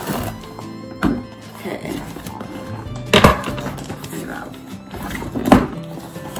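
Scissors and a cardboard toy box being handled as packing tape is cut, with three sharp knocks about one, three and five and a half seconds in. Background music plays underneath.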